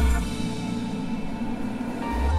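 Live band with electric guitars, keyboards, bass and drums playing a pop-rock song, in a quieter passage where the deep low end thins out under sustained chords.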